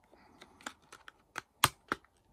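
Hands handling a metal 4K Blu-ray steelbook case and its packaging: a few sharp clicks and taps, the loudest about a second and a half in, another just before the end.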